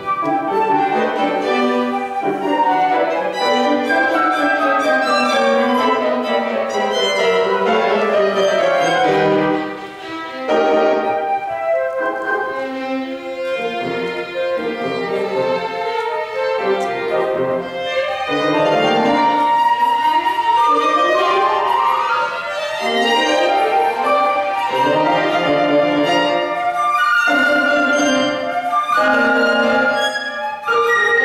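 Flute, violin and piano playing classical chamber music live, with a brief drop in level about ten seconds in.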